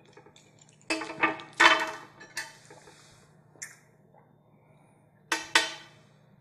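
Glass clinking and knocking on a glass tabletop: a cluster of loud clinks about a second in, single ones near the middle, and a final pair near the end, each ringing briefly.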